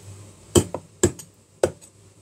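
A Chinese cleaver chopping through chicken feet on a plastic cutting board: three sharp chops about half a second apart.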